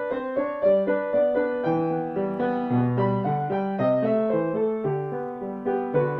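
A grand piano being played: a melody moving note by note over held lower notes, at a steady, unhurried pace.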